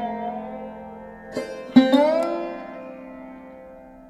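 Background instrumental music on a plucked string instrument: two notes struck about a second and a half in, bending in pitch as they ring, then slowly dying away.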